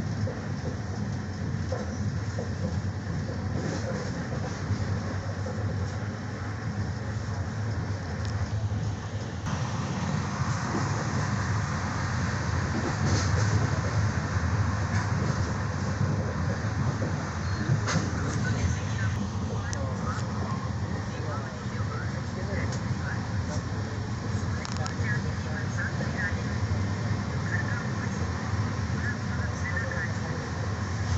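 Train running along the track, heard from inside the carriage: a steady low rumble of wheels and rails with scattered light clicks and knocks.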